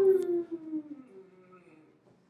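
A person's voice held on one long drawn-out note that slowly falls in pitch and fades away.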